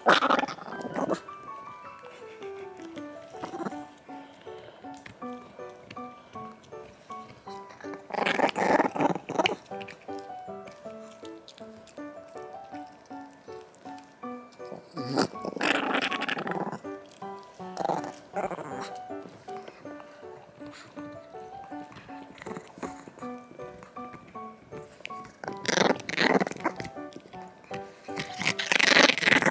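Chihuahua growling in about five short bursts while guarding its bone-shaped chew toy, over background music with a steady stepping melody.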